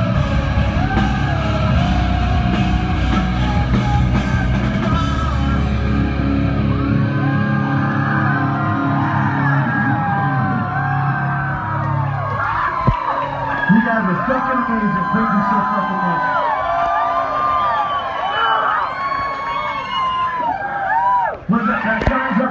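Rock band playing live, distorted guitars, bass, drums and a sung vocal, until the music stops about seven seconds in. A club crowd then cheers, yells and whoops, and a voice comes back on the microphone near the end.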